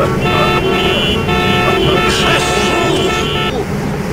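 Car horns honking in traffic: several held horn tones sounding together over the low rumble of traffic, cutting off about three and a half seconds in.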